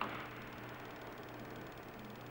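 Faint steady hiss with a low hum: the background noise of the narration recording, with no distinct event.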